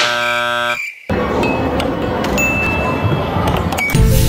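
A buzzer-like chord of steady tones sounds for under a second and cuts off. After a brief gap comes a steady, noisy arcade din with scattered clicks and a few short high beeps.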